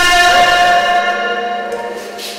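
Karaoke backing track of a Korean ballad between sung lines: held chords ringing on and fading steadily.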